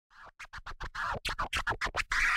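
DJ turntable scratching opening a Sinhala pop song remix: a run of short, quick cuts, about six a second, growing louder.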